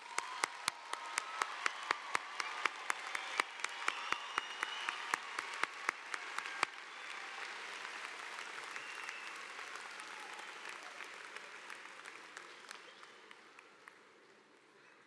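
Large crowd applauding, with many sharp individual claps standing out over the first half. The applause then thins and tapers off toward the end.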